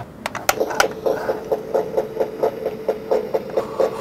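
Built-in electronic drum sound of a mini Jumanji board game replica, set off by its pull-to-play tab: a steady run of drumbeats about four a second, after a few clicks in the first second.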